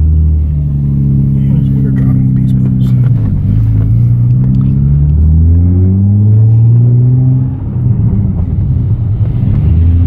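Nissan 350Z's 3.5-litre V6 with an aftermarket exhaust, heard from inside the cabin while accelerating away. The engine note climbs, drops at an upshift about three seconds in, climbs again and drops at a second upshift about seven and a half seconds in.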